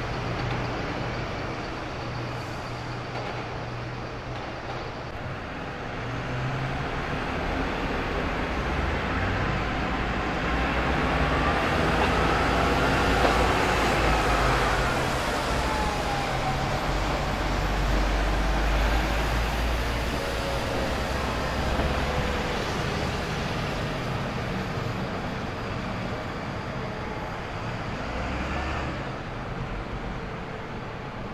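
City street traffic with diesel bus and other vehicle engines running. Traffic grows louder through the middle as a vehicle passes close, its whine rising and then falling in pitch.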